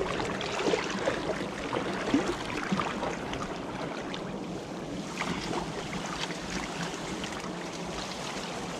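Water sloshing and splashing as legs wade through a shallow, muddy stream, a steady uneven wash of water.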